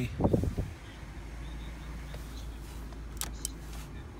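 Peugeot 207 CC's 1.6 petrol engine idling, a steady low hum heard inside the cabin. A short rumble of handling comes just after the start, and two sharp clicks come about three seconds in.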